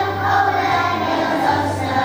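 A choir of kindergarten children singing an alphabet Christmas song over musical accompaniment.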